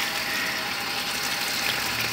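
Water spraying onto plants and patio surfaces, a steady even hiss of spray.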